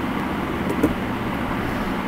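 Steady background noise with a low rumble, no speech.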